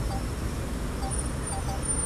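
Steady low background rumble of outdoor street ambience with distant traffic, and a faint steady high-pitched tone above it.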